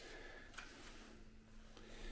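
Near silence: faint room tone with a steady low hum and one faint click about half a second in.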